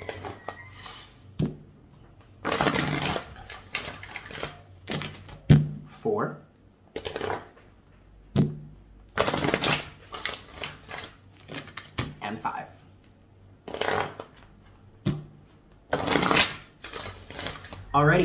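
A deck of oracle cards being shuffled by hand, in about four bursts of rustling, each a second or so long, with short vocal sounds between them.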